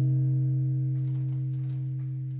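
The final strummed chord on an acoustic guitar ringing out, slowly fading.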